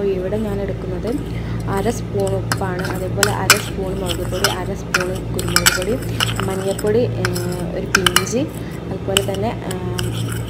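A metal spoon stirring dry ground spices in a ceramic bowl, scraping and clinking against the china over and over. The sharpest clinks come about three and a half seconds in and again around eight seconds.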